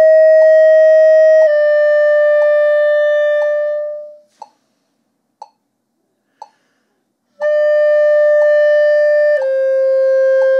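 B♭ clarinet playing overtones with an air attack and no register key, in slurred half-note pairs stepping down a scale. A note slurs down a step and fades out about four seconds in. After a rest of about three seconds, another note enters and slurs down a step near the end. A metronome ticks about once a second.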